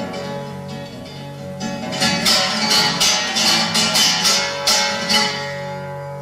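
Solo acoustic guitar: a couple of seconds of ringing notes, then a run of sharp strummed chords about three a second, ending on a final chord left to ring out as the song closes.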